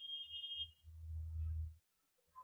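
Old domestic sewing machine running briefly as fabric is fed under the presser foot, heard only faintly as a low rumble that is strongest in the second half. A faint steady high tone stops under a second in.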